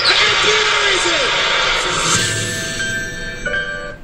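Television audio picked up off the set's speaker: a voice in the first second, then a sustained music sting for the production logo that slowly fades, with a new chord near the end.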